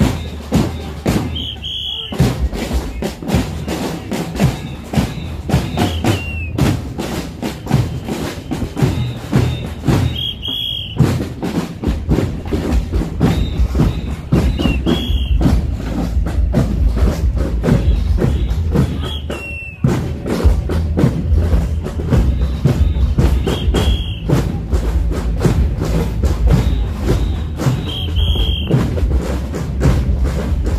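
Marching hand drums beating a steady rhythm, with a short high note cutting in about every four and a half seconds.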